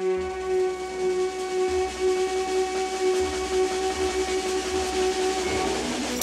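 Live band holding a sustained droning chord: steady tones over a hissy wash, with a low rumble coming in just after the start.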